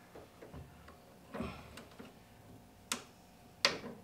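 A few short clicks and taps from hands working a rubber pedal pad onto a metal pedal arm: a faint one about a second and a half in, a sharp one near three seconds and the loudest just before the end.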